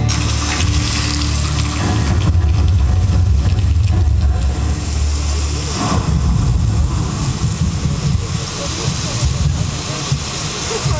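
Deep, loud low rumble from the light show's soundtrack over outdoor loudspeakers, easing into a choppier mix about six seconds in, with crowd voices underneath.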